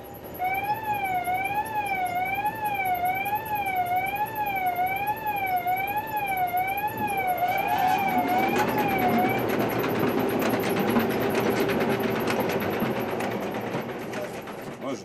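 Coal-mine machinery start-up warning siren, a warbling tone that rises and falls about once a second for about nine seconds after the start button is pressed. About seven seconds in, the newly installed longwall conveyor equipment starts up: a rising whine and then steady running machine noise.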